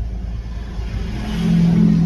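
Ford F-150 pickup running down the road, heard from inside the cab: steady low engine and road rumble that grows louder about a second in, with a steady droning hum as the truck pulls harder.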